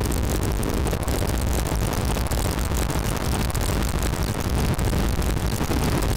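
Harsh noise from homemade electronic instruments: a loud, dense, crackling wash across all pitches over a heavy low rumble, steady in level.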